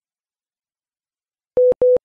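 Silence, then near the end two short electronic beeps at one steady mid pitch in quick succession: a cue tone separating two items in a radio news bulletin.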